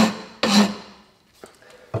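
Old horseshoe rasp, fine side, filing the end of a wooden hatchet handle in two scraping strokes within the first second. It is taking down the high spots where the handle binds in the axe head's eye, so the head will seat deeper.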